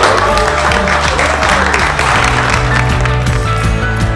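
A crowd of wedding guests applauding and cheering, with one rising-and-falling whoop, over background music with a steady bass line. The applause fades away about halfway through, leaving the music.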